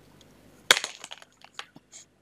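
A pen clattering onto a desk: one sharp clack about two-thirds of a second in, then a run of lighter clicks and rattles for about a second.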